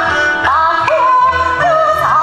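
Yue opera aria: a female voice holding and bending notes with wide vibrato over a traditional Chinese opera orchestra.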